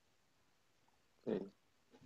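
Near silence, then a single short spoken "okay" about a second and a quarter in.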